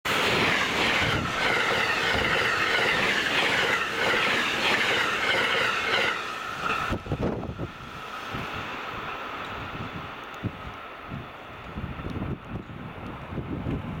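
Electric passenger train running past at speed on the rails, loud for about the first seven seconds, then dropping away suddenly to a faint rumble as it moves off.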